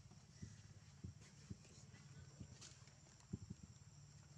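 Near silence: a faint steady high insect drone over a low hum, with about six soft, irregular taps.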